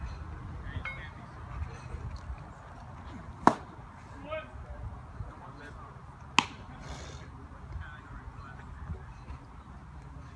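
Two sharp pops of a baseball smacking into a leather glove, about three seconds apart, with faint scattered voices around the field.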